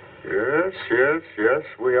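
Speech: film dialogue starting a moment in, on a thin soundtrack that cuts off above about 4 kHz.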